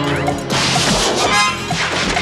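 A loud crash of a skier wiping out in the snow, starting about half a second in and lasting about a second, over background music with a steady beat.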